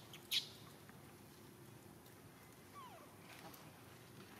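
A baby macaque gives one short, high squeak about a third of a second in. Near three seconds a faint, short falling call follows, over a low steady background hiss.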